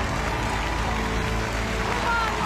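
Backing music with an audience applauding and cheering over it.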